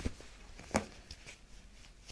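Hands working a patient's feet and ankles right beside the microphone: a few soft knocks and handling sounds, with one sharper click about three-quarters of a second in.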